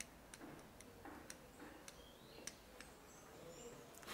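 Near silence, broken by about six faint sharp clicks roughly every half second: a pair of internal circlip pliers being squeezed and released in the hand.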